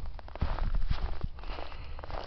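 Footsteps in snow: an irregular run of crunching steps.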